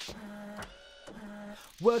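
An office printer's mechanism running in two short passes of about half a second each, with a pause between them; a singing voice comes in right at the end.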